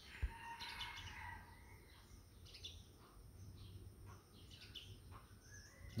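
Faint bird chirps over quiet background hum, with one soft click just after the start.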